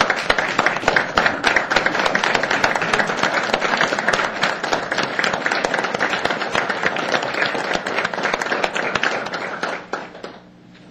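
A roomful of people applauding: dense, steady clapping that dies away near the end.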